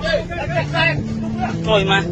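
Several people's voices over a running boat motor, with steady background music.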